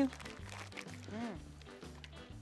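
The packaging of a roller bandage crinkling faintly as it is opened, over quiet background music with a repeating low bass beat.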